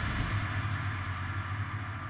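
A low, sustained drone from a dramatic background music score, slowly fading away after a hit.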